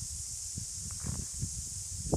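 Outdoor background noise: a steady high-pitched hiss over a low rumble, with a few faint short sounds about a second in.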